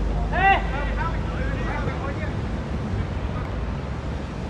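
A short loud shout about half a second in, followed by fainter calls, over a steady low rumble of wind on the microphone.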